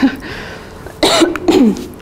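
A woman coughs about a second in, with a brief laugh.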